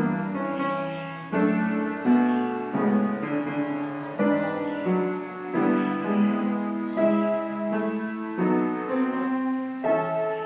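Upright piano played in a slow piece, chords and notes struck about once a second and left to ring.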